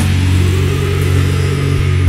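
Funeral doom metal: heavily distorted guitars holding a low, sustained chord, with a single low drum thump near the end.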